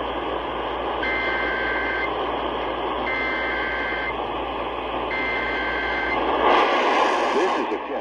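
Portable AM radio tuned to 840 AM receiving an Emergency Alert System weekly test: three one-second bursts of buzzy two-tone data (the EAS header) about a second apart, over steady static hiss. A short, louder burst of hiss follows near the end.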